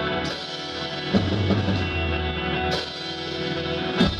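Live band music: a trombone and a trumpet playing a horn line together over drums, with a few sharp drum hits.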